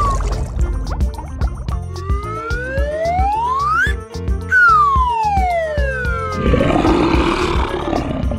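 Children's cartoon background music with a beat, over which a whistle-like sound effect glides up in pitch about two seconds in and then glides down just after the middle. Near the end a tiger's roar comes in.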